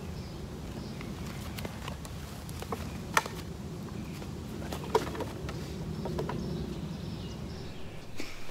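Steady low outdoor rumble with a few short, sharp clicks, the loudest about three seconds in and another about five seconds in.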